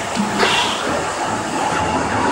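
Roller coaster car running along its steel track: a steady rumble and rattle of the wheels.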